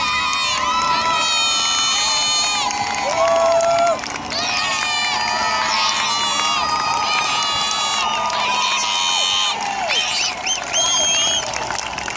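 Roadside crowd cheering and shouting for racing cyclists as they ride past, many voices overlapping in long, sustained yells and whoops.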